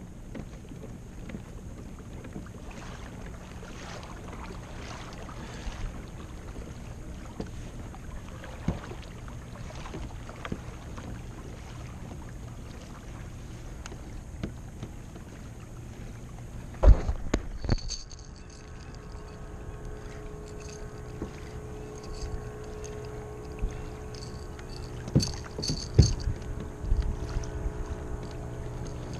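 Hobie Outback fishing kayak under way on calm water: a steady low rumble of hull and water. A few loud knocks from gear handled in the boat, about two-thirds of the way in and again near the end, with a faint steady hum joining after the first knocks.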